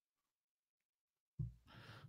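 Near silence, broken about one and a half seconds in by a short intake of breath close to the microphone just before speech resumes.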